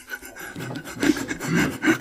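Laughter, with short broken chuckles about a second in, over a rustling, rasping noise.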